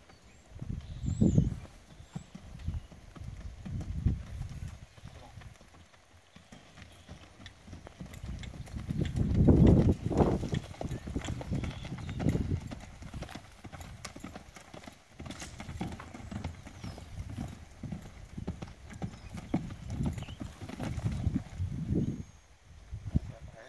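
Hoofbeats of a two-year-old buckskin Quarter Horse mare loping on soft dirt: a steady run of low, muffled thuds, loudest about halfway through.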